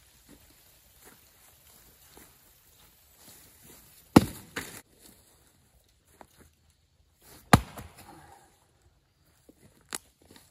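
A True Temper Kelly Perfect axe with a four-pound head striking a firewood log twice, about four seconds in and again about three seconds later. The first blow is the loudest and is followed by a lighter knock.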